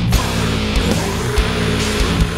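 Metalcore song playing loud and steady: distorted electric guitars, bass and a drum kit with regular kick-drum hits.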